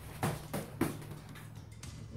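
Three quick strikes landing in fast succession in the first second, sharp impacts of hands on the body and padded arm guards during a rapid-striking drill.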